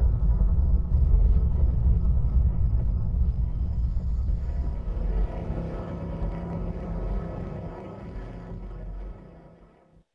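Closing soundtrack of a documentary film trailer: a deep, rumbling drone with sustained tones, fading out over the second half and stopping just before the end.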